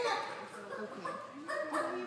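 A person's voice making animal-like calls instead of words, sliding up and down in pitch, with a second call near the end; in imitation of a bird.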